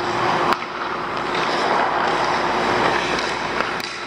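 Hockey skates scraping and carving on the ice, with a sharp click about half a second in and a few lighter clicks near the end.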